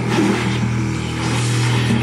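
Baritone saxophone and distorted electric guitar in free improvisation, holding a steady, low, gritty drone on one pitch.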